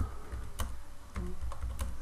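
A few separate keystrokes on a computer keyboard as a search query is typed, with a low steady hum underneath.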